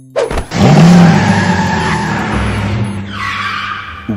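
Dubbed car sound effect: a car engine revs up about half a second in and the car speeds off, then tyres skid in the last second as it pulls up.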